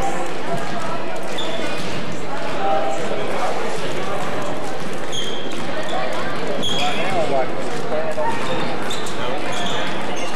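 Basketball game in a school gym: many overlapping voices from the crowd and players, a basketball bouncing on the court, and a few short high-pitched squeaks.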